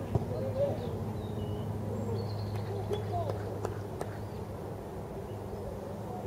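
Distant, scattered voices of players calling across an outdoor football pitch, with a few faint sharp knocks around the middle, over a steady low hum.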